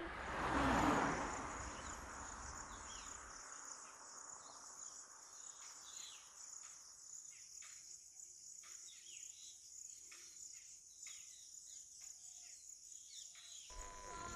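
A soft whoosh that fades away over the first two seconds. Then a faint outdoor ambience: a steady high insect drone, with scattered short chirps through the second half.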